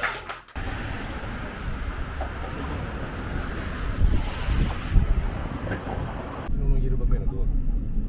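Street ambience with wind buffeting the microphone and traffic noise. About six and a half seconds in it switches to the duller low rumble of a car cabin on the move.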